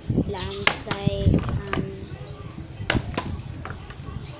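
Plastic water bottle knocking on a concrete floor as it is set down and handled for bottle flips: a few sharp knocks, two close together about a second in and two more near the end.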